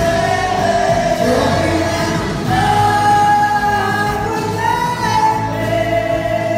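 Live band playing, heard from the audience: a woman singing long held notes at the microphone over electric guitars and drums.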